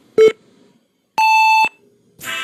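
Electronic countdown beeps: one short, lower beep, then about a second later a longer, higher-pitched beep that ends the countdown.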